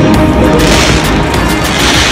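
Stage pyrotechnic spark fountains firing, a rushing hiss that swells about half a second in and again near the end, over loud show music.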